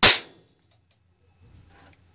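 A single very loud bang as a charged high-voltage capacitor discharges through a small TV speaker's wiring, dying away within about a third of a second.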